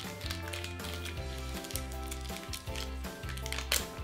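Light instrumental background music with a repeating bass line.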